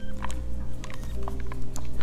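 Soft background music with sustained low notes, with a few faint clicks from plastic over-ear headphones being flexed and handled.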